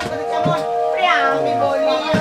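Folk ensemble music: a harmonium holds steady notes while a high melodic line slides up and then back down in pitch about halfway through.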